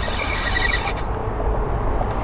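Wind rumbling on the microphone while a hooked fish is played on a Daiwa Exist spinning reel, with a quick run of high ticking from the reel in the first second.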